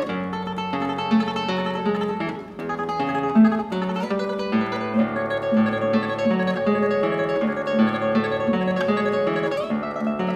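Solo classical guitar played fingerstyle: a continuous line of plucked notes over held lower notes, with a brief softening about two and a half seconds in.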